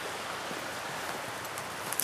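Steady hiss of a creek running, even throughout.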